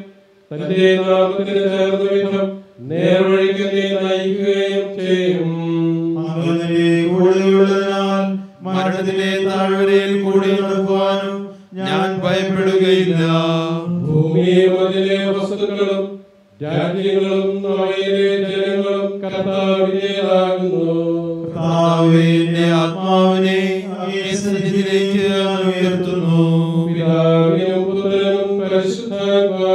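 A man's voice chanting a liturgical text in long held notes and gliding phrases, with short pauses for breath between phrases.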